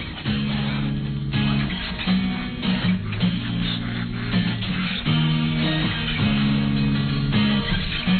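A recorded rock song playing: an instrumental stretch of electric and acoustic guitar strumming chords over bass.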